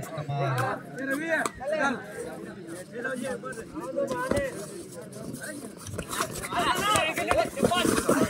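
Men's voices shouting and calling over one another around a kabaddi court. The voices grow louder and more excited near the end as the raider is tackled to the mat.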